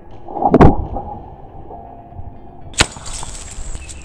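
A 40mm airsoft grenade shell loaded with flour fires in a pressure-plate land mine as it is stepped on: one loud bang about half a second in, dying away over about two seconds. A single sharp crack follows nearly three seconds in.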